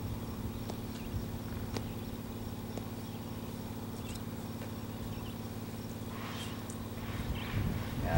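A steady low engine hum, like a diesel idling, with a few faint clicks. Voices begin to rise near the end.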